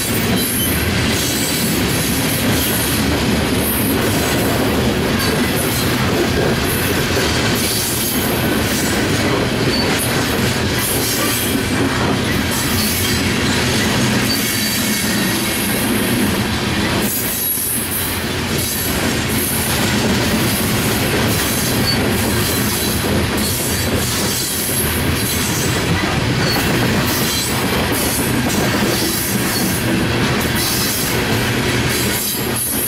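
Coal hopper cars of a long freight train rolling steadily past at close range. The steel wheels on the rails make a continuous rumble and clatter.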